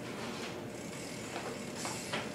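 A 2010 Stolen Stereo BMX bike rolling on a hard wooden floor, its tyres hissing steadily on the boards, with a few short sharp scrapes, the strongest near the end as the front wheel is stopped for a footjam.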